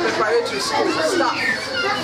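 Speech: a woman talking, with other voices in the background.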